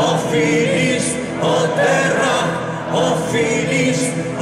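Folk-metal band playing live with the lead singer holding long sung notes over the band, recorded from within the audience.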